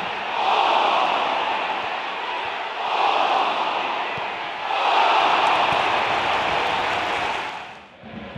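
Football stadium crowd roaring in three rising swells as a header goes in at goal, fading away just before the end.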